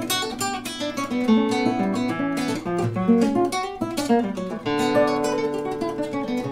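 Acoustic guitar played fingerstyle in a classical style: plucked bass notes under a melody of single notes and chords, played continuously.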